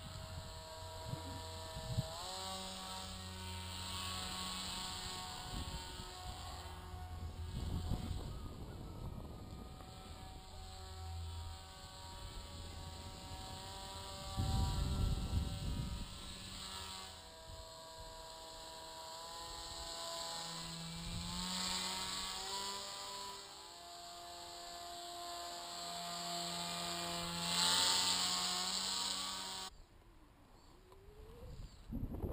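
Electric motor and propeller of an RC paramotor pilot whining in flight, its pitch stepping up and down with the throttle. About halfway through, a gust of wind on the microphone is the loudest sound.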